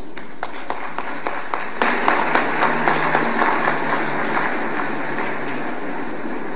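Audience applauding, a dense patter of many hands clapping that swells about two seconds in and then tapers off.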